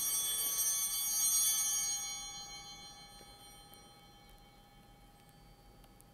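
An altar bell rung at the elevation of the host, marking the consecration. It rings out with several steady pitches and fades away over about four seconds.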